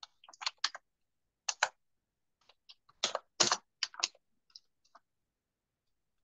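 Typing on a computer keyboard, in irregular quick clusters of keystrokes. The loudest run comes about three seconds in, and it stops about a second before the end.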